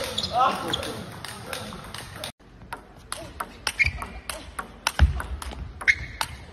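Table tennis rally: the celluloid ball clicking off rackets and table in quick succession, several hits a second, after a short spoken word at the start. A low thump about five seconds in.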